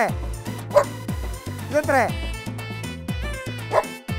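A large dog barking a few times, each bark short and falling in pitch, over background music.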